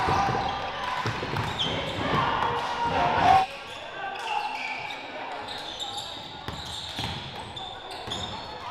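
Live game sound in a gym: a basketball bouncing on the hardwood, sneakers squeaking and indistinct voices echoing in the hall. The sound is louder at first and drops suddenly about three and a half seconds in.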